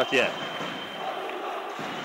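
Indoor sports-hall background noise, a low even murmur with a thin steady high whine, between bursts of a man's match commentary at the start and near the end.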